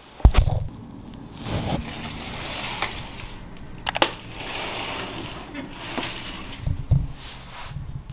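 A loud knock of the camera being handled, then a soft, even hiss of room noise with a few faint clicks and a low thud near the end.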